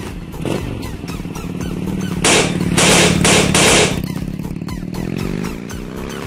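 A motorcycle-like engine sound with an even pulse, broken by four loud hissing bursts in the middle and rising in pitch near the end as if revving.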